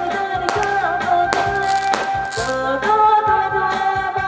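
A woman singing a pop song into a microphone over a backing track with a beat, amplified through a stage sound system.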